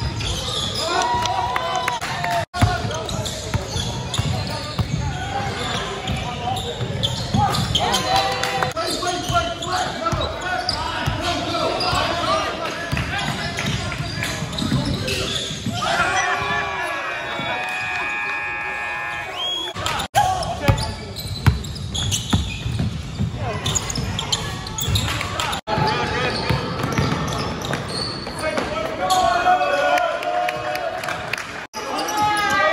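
Live game sound of basketball in a gym: a ball bouncing on the court and players' and spectators' voices echoing in the large hall. A steady high tone is held for about three seconds past the middle, and the sound cuts out abruptly three times.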